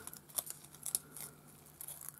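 Faint, scattered crackles of a thin, curled wood shaving being handled and crumpled between the fingers.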